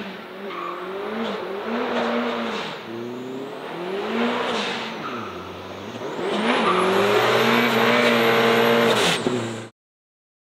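Turbocharged Volvo 745's engine revving up and down several times as the car does a burnout, tyres smoking. In the second half it is held at high revs, loudest, with a thin high whine climbing over it. The sound cuts off abruptly near the end.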